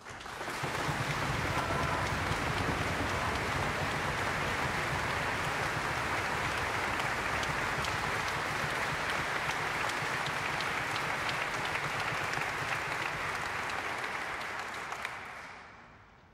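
Audience applauding, starting abruptly and holding steady, then fading out over the last second or so.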